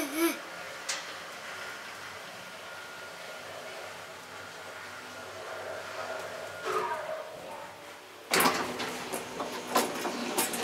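Small elevator car running with a faint steady hum, then a short falling sound as it comes to a stop about seven seconds in. About a second later the folding car door is pushed open with a sudden loud sliding rattle and clicks.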